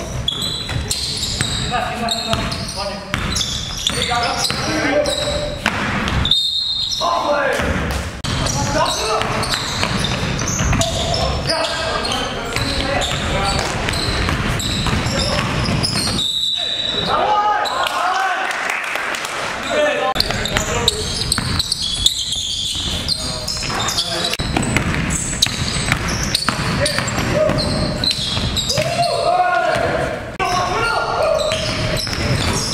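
Live sound of an indoor basketball game: a ball bouncing on the hardwood floor amid players' shouts and voices, echoing in a large gym.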